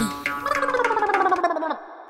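A warbling, pitched tone that glides steadily downward and then fades away near the end.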